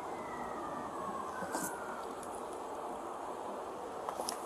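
Low, steady background noise with no clear event, and a faint tone gliding downward over the first two seconds.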